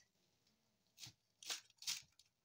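Three short, crisp rustles of fresh coriander leaves being handled and pushed across a cutting board, coming in the second half after a near-silent first second.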